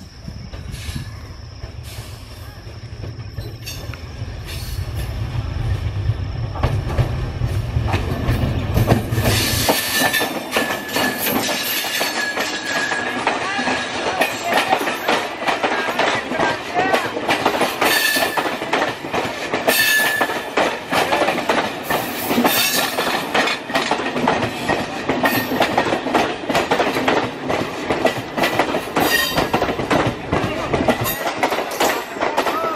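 MEMU electric passenger train approaching with a low rumble that grows louder, then passing close by. Its wheels clatter over the rail joints in a rapid run of clicks, with a thin high wheel squeal coming and going.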